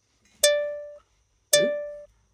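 Intro beat of a music backing track: a plucked-string note sounds twice, about a second apart, each ringing out and fading.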